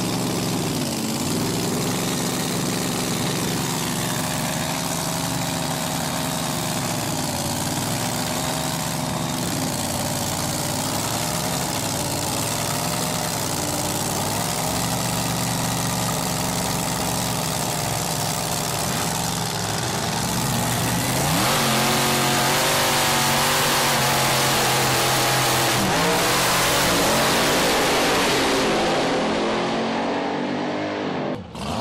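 Supercharged drag-racing engine of a top alcohol race car idling with a wavering, uneven note. About twenty seconds in it rises in pitch and gets louder, holds there for several seconds, then eases off near the end.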